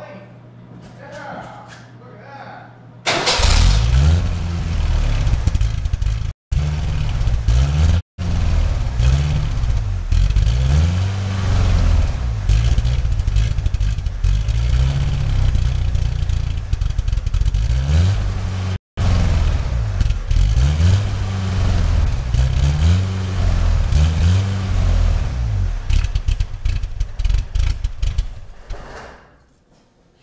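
1986 Ford Ranger's carbureted 2.0 L four-cylinder engine catching suddenly about three seconds in and then running with its revs rising and falling over and over, about once a second, as the throttle is pumped to keep it alive because it will not idle, which the owner puts down, as a guess, to two-year-old gas. The sound cuts out completely three times for an instant, and the engine fades away near the end.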